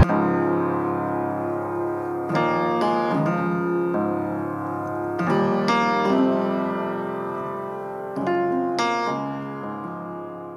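Outro of an emotional hip-hop instrumental in A-flat major: the drums cut out and sustained piano chords play alone, a new chord about every three seconds, slowly fading.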